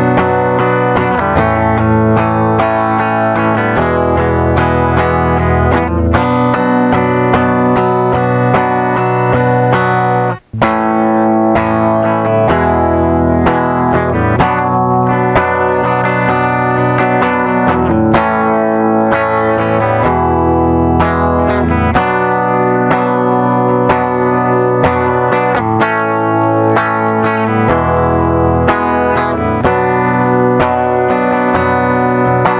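Electric guitar strumming an A, E, B minor chord progression, the chords ringing and changing about every two seconds. A momentary break about ten seconds in, after which the same progression carries on.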